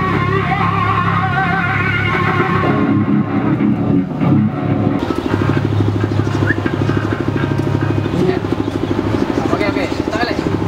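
Heavy metal music: distorted electric guitar and bass holding low notes, with fast repeated picking from about halfway through.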